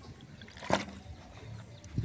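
Water poured from a plastic bottle into a plastic cup, a faint trickle, with one short knock a little under a second in.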